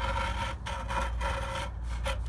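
Rubbing and scraping as the old heating element of an Atwood RV water heater is worked out of the tank by a gloved hand, with two brief dips, over a steady low hum.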